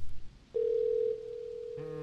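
Telephone dial tone heard from a phone held to the ear: one steady tone that starts about half a second in and drops in level about a second in. Near the end a deeper, buzzy tone with many overtones comes in underneath it.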